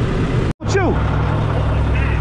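Heavy diesel equipment running at an asphalt paving site, a steady low rumble. The sound drops out for an instant about half a second in and comes back as a steadier hum.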